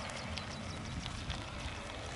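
Cessna 525 Citation business jet's twin turbofan engines heard from a distance as it rolls along the runway: a steady rumble and hiss.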